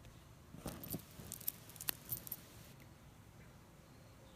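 Light clinking and jingling of a beaded stone necklace with copper spacers and a metal leaf toggle clasp being picked up and handled: a scatter of small clinks starting just under a second in and lasting about two seconds.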